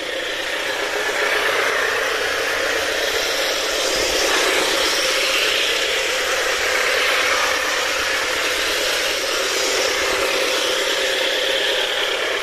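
HO-scale CC201 model diesel locomotive running at full speed around the track: a steady whir of its motor and gears, with the wheels rolling on the rails.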